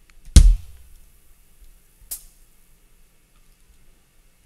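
Two single sampled drum hits from the MINDst Drums virtual kit, heard as notes are clicked into the sequencer pattern. The first, shortly after the start, is loud and deep with a short ringing tail. The second, about two seconds in, is fainter and brighter.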